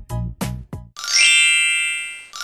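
Background music with quick struck notes ends about a second in. A bright chime then rings out and fades slowly.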